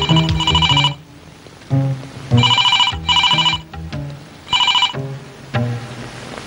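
A telephone bell ringing in repeated bursts over dramatic film background music with low string notes.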